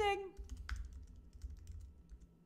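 Typing on a computer keyboard: scattered key clicks at an uneven pace, following the tail of a spoken word.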